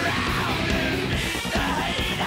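Loud heavy metal song: drums and bass under a yelled male lead vocal.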